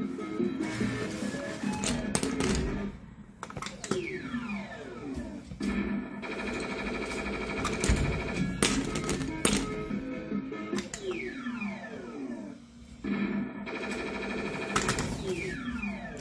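Claw machine's electronic game music playing, with a falling-pitch sound effect about four seconds in, again about eleven seconds in and near the end, and scattered sharp clicks.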